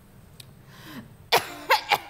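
A woman coughing and spluttering with a mouthful of salted mango: a breathy catch, then a quick run of sharp, loud coughs in the second half.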